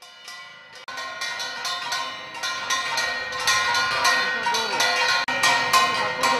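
Hand-held brass gong (ghanta) beaten rapidly and repeatedly with a wooden stick, at about three to four strokes a second, each strike ringing on into the next. It starts softly and grows louder over the first few seconds.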